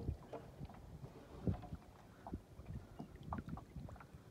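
Faint low wind rumble on the microphone over open water, with a few soft knocks and clicks scattered through it.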